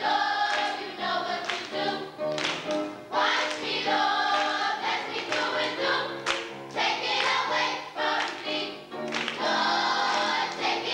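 Children's choir singing a gospel song, with hand claps along with the singing.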